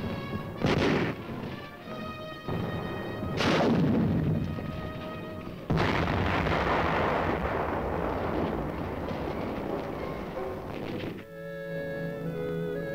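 Dramatic orchestral score under battle sounds: two heavy explosions, about a second in and at about three and a half seconds, then a bigger blast at about six seconds that dies away slowly over several seconds, leaving the music alone near the end.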